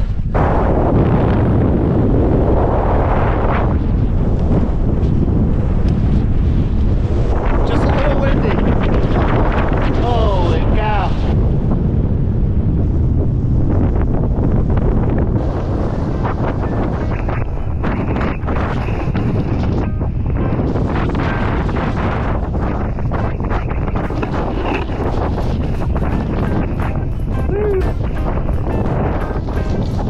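Strong wind buffeting a helmet-mounted camera's microphone, a loud steady rumble, while a snowboard slides down over wind-packed snow.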